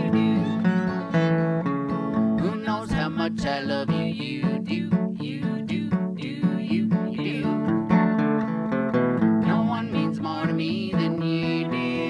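Acoustic guitar strumming a steady rhythm while a fiddle plays the melody in an instrumental break.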